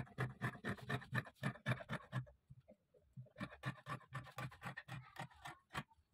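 Fabric scissors snipping through folded fabric, a quick run of short cuts about five or six a second, pausing for about a second midway, then cutting on.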